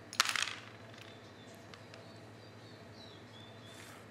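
Dice thrown onto a wooden backgammon board: a quick clatter of several hits just after the start, followed by a few light clicks as checkers are moved. A faint, high, wavering chirp sounds in the background near the end.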